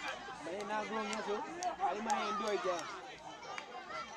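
Several voices talking and calling at once, overlapping chatter with no single clear speaker.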